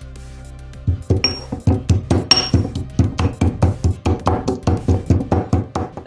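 Stone pestle pounding soaked comfrey root in a stone mortar, a run of rapid knocks about four a second starting about a second in, as the root is worked into a paste. Background electronic music plays throughout.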